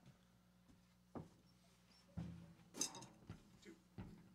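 Near silence with a slow, quiet spoken count-off, "one… two", and a few faint clicks between the words.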